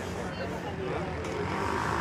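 A motor vehicle running on the street, growing louder near the end, under faint background voices.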